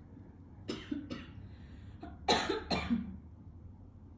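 A person coughing four times in two pairs: two short coughs about a second in, then two louder coughs a little after two seconds.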